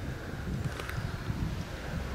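Wind buffeting the camera microphone: a low, uneven rumble.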